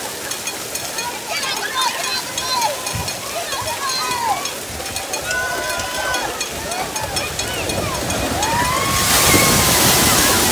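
Crowd voices and shouts at a water-park splash pad, then, about nine seconds in, a large tipping bucket dumps its load: a loud rush of water pouring down onto the people below.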